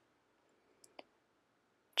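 Near quiet room tone with one short, faint click about halfway through.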